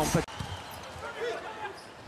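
A volleyball spiked into the blockers' hands at the net: one sharp smack right at the start. It is followed by the low, steady noise of the arena crowd.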